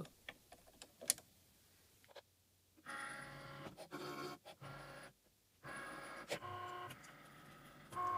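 Cricut Maker's carriage motors whirring in two runs of a few seconds each, with a short pause between, as the empty tool carriage moves along its bar. A few faint clicks come first.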